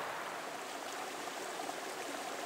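Small hillside stream of water flowing steadily.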